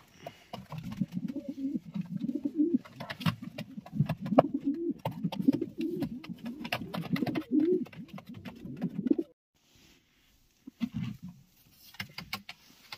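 Racing pigeon cooing over and over, low rolling coos rising and falling in pitch, with a few sharp clicks mixed in; the cooing cuts off suddenly about nine seconds in.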